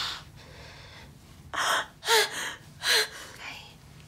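A distressed, tearful woman gasping and sobbing as she catches her breath once a gag is taken from her mouth. There are three loud, short, gasping breaths between about one and a half and three seconds in, with a catch of voice in two of them.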